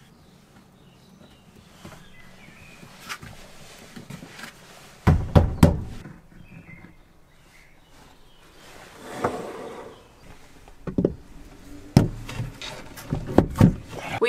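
Wooden pieces and stones handled inside a plywood cabinet: a few scattered knocks and thumps, the loudest about five seconds in and a cluster near the end, as glued wooden trash-can feet are pressed into place and stone weights are set on them.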